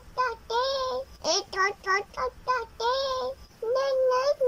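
A high-pitched, child-like singing voice with no audible accompaniment: quick short notes broken by a couple of longer held notes.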